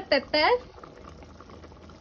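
A pot of thick, creamy soup simmering on the stove, a low steady bubbling.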